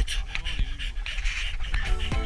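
A person breathing hard, with a few light knocks and scrapes of skis and poles in the snow.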